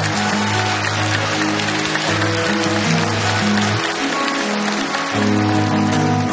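Live band playing a song's instrumental introduction, with long held low notes, while the audience applauds over it.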